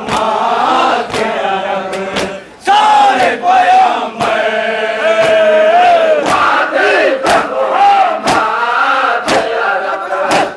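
A crowd of men chanting a nauha, a Shia lament, in unison with long, gliding sung lines. Sharp hand slaps of matam, chest-beating, fall about once a second in time with the chant.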